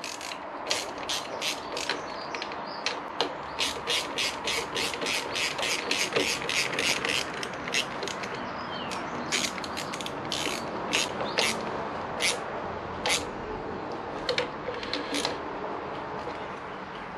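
Hand ratchet clicking in runs of quick clicks with short pauses, as the bolts of a motorcycle clutch lever clamp are tightened.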